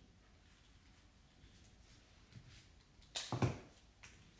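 Quiet room tone, then about three seconds in a brief handling noise from rose stems being worked in the hands.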